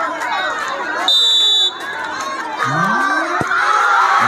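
Crowd of spectators chattering. About a second in, a referee's whistle gives one short, steady blast to signal the penalty kick. Near the end comes a single thud as the ball is kicked.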